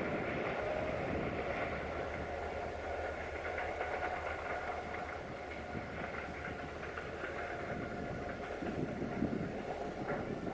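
CFR class 64 'Jimmy' diesel locomotive running as it hauls a passenger train away, a steady engine rumble mixed with wheel and rail noise.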